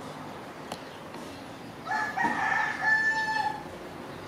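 A rooster crowing once: a single long call held at a steady pitch for about a second and a half, starting about two seconds in.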